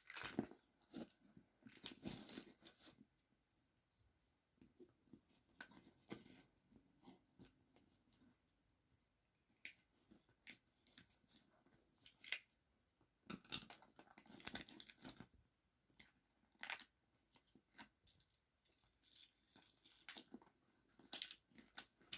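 Faint, scattered handling sounds of small items and backpack fabric being rustled and clicked as things are packed back into a pocket, with quiet gaps between.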